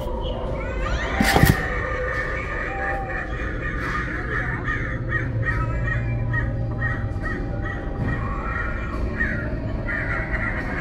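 Animatronic jack-o'-lantern prop playing its creature sound track, a harsh rasping voice-like sound, as its jaw opens. A sharp click comes about a second in.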